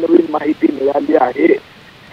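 A man speaking with a thin, telephone-like sound, stopping about one and a half seconds in.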